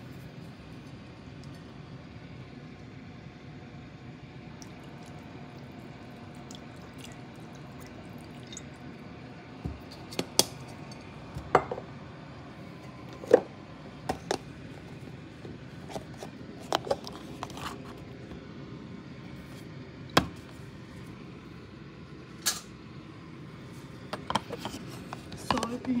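Kitchen handling sounds: a steady low background noise, then from about ten seconds in a series of scattered sharp clinks and knocks as bottles and cookware are picked up and set down.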